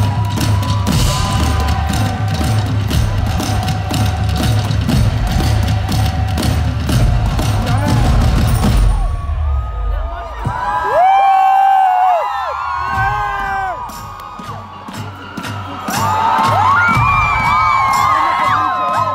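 Live drums pounded hard by several drummers at once, a heavy rhythm that stops suddenly about nine seconds in. A big concert crowd then cheers, with many high screams and whoops rising and falling, fading briefly and swelling again near the end.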